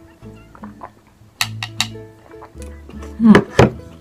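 Light background music with steady notes. A few sharp clicks come about a second and a half in, and near the end a louder thunk as a wooden bowl is set down on the table, together with a short 'mm'.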